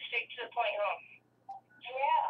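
A person's voice on a phone call, heard through the phone's speaker: thin and narrow, with short phrases and brief pauses.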